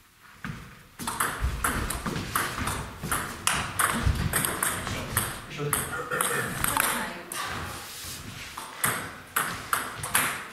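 Table tennis rally: the plastic ball is hit back and forth by bats and bounces on the table, making quick sharp clicks that start about a second in and stop after about seven seconds. A few single ball clicks follow near the end.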